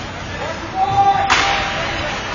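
A single sharp crack from hockey play, a stick or puck striking, about a second and a half in, its echo fading in the rink, over a raised voice holding a call.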